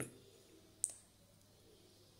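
A single sharp click a little under a second in, over faint background noise.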